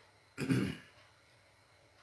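A man clears his throat once, briefly, about half a second in; otherwise faint room tone.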